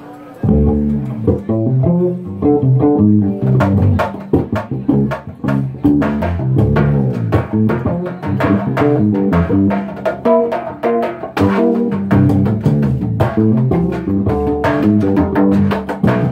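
Live acoustic trio music starting abruptly about half a second in: plucked string melody over a low plucked bass line, in the hijaz mode. Sharp hand-drum strikes join from about three and a half seconds.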